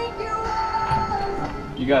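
Music with a held melody line playing through the built-in Bluetooth speaker of an AwoX Striim LED light bulb.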